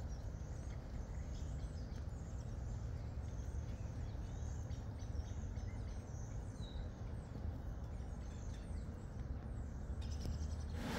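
Outdoor field ambience: a steady low rumble of wind on the microphone, with faint, scattered bird chirps.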